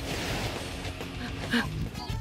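Cartoon background music, with a brief faint sound about one and a half seconds in.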